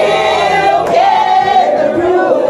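A group of people singing together loudly, several voices overlapping.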